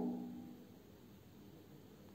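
Near silence: the end of a woman's voice dies away in the first half-second, then only faint steady hiss.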